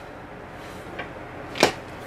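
Quiet room tone broken by a faint tick about halfway, then one short sharp knock of a cardboard box being handled on the table near the end.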